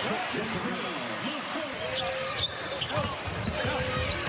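Broadcast game sound from a basketball arena: crowd noise with a ball being dribbled on the hardwood court, and voices throughout.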